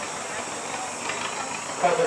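A steady hiss of outdoor background noise, with faint voices in the background.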